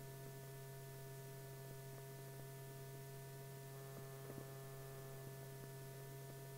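Faint, steady low electrical hum on an old film soundtrack, with a few faint clicks about four seconds in.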